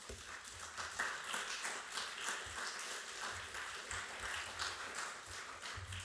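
Audience applauding: many people clapping steadily, starting all at once.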